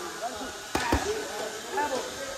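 Strikes landing on leather Thai pads during Muay Thai pad work: two sharp smacks in quick succession about three quarters of a second in.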